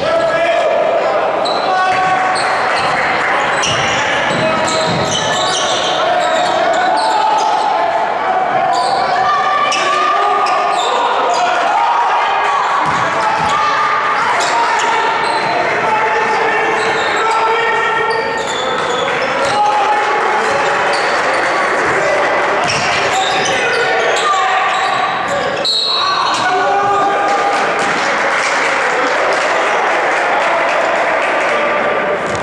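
Basketball game in a gymnasium: a basketball bouncing on the hardwood floor with scattered sharp knocks, under voices of players and spectators calling out throughout, echoing in the large hall.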